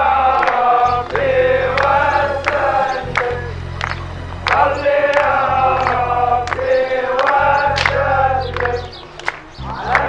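A choir chanting a song in phrases of a few seconds each, with sharp percussion strikes and a low steady drone underneath.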